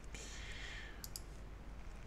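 A soft breathy hiss, then two faint quick clicks about a second in.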